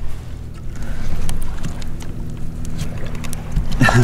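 A steady low engine drone with scattered clicks and wind noise over it, ending with a short burst of voice.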